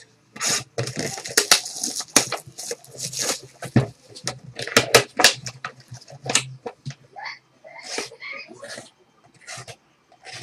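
Plastic shrink wrap being torn and crumpled off a cardboard box of trading cards, then the box opened: a dense, irregular run of sharp crackles that thins out near the end.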